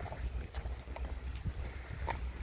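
Footsteps and dogs' claws tapping on a concrete path as two dogs are walked on leads, an irregular patter of light clicks over a low wind rumble on the microphone.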